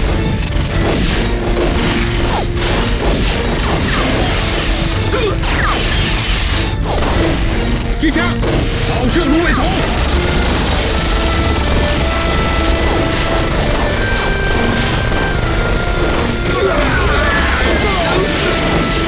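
Dense, continuous gunfire from rifles and a light machine gun, a battle-scene sound effect of many shots in quick succession, with a music score underneath.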